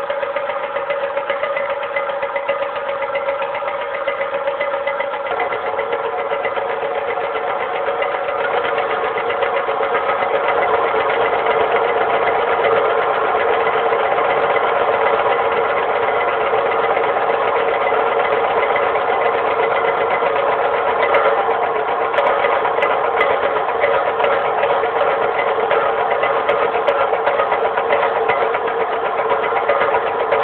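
Ensemble of Japanese taiko drums played in a fast, continuous roll, starting suddenly just before and growing a little louder partway through.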